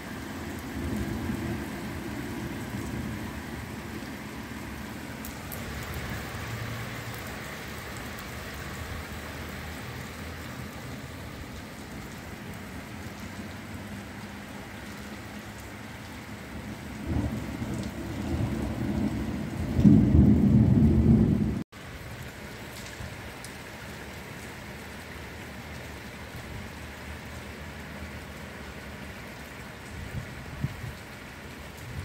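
Heavy rain pouring down steadily. A louder low rumble swells about two-thirds of the way in and breaks off suddenly, after which the rain carries on.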